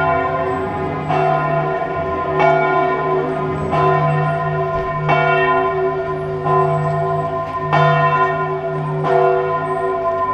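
Church bells ringing, struck about once every second and a quarter, with the ringing carrying on between strokes.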